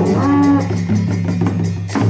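A long straight brass horn sounding a loud, low droning note that swells and bends twice, over rapid, evenly spaced strokes on large two-headed barrel drums.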